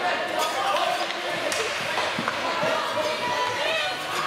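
Spectators' voices talking and calling out at an ice hockey game, with a few sharp knocks of hockey sticks and puck on the ice around the middle.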